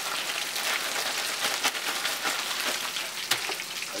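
Battered swai fish fillets frying in hot oil in a cast iron skillet: a steady crackling sizzle.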